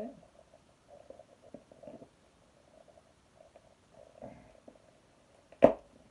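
Packaging of a model minibus being handled and opened: faint rustles and light taps, then one sharp snap about five and a half seconds in.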